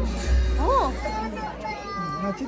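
Crowd voices, with a child's rising-and-falling call a little over half a second in, over a low rumble that stops near the end.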